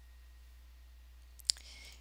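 A single sharp computer-mouse click about one and a half seconds in, over a steady low hum.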